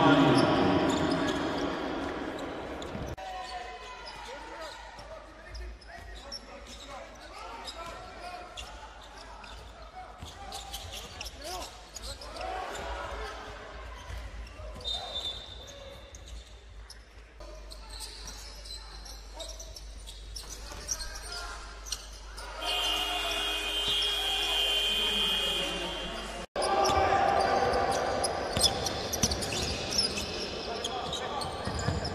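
Basketball game court sound: a ball bouncing on a hardwood floor, with clicks and knocks of play echoing in a large hall. A steady held tone sounds for about four seconds near the three-quarter mark, and the sound jumps abruptly at edits.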